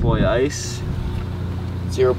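A short vocal sound at the start, then a steady low mechanical hum with a few even tones that carries on under the rest.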